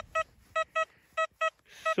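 XP Deus 2 metal detector sounding a target: short, identical beeps at one steady pitch, in pairs, as the coil is swept back and forth over it. It is a strong high-conductor signal that reads a solid 95, called the best signal of the day.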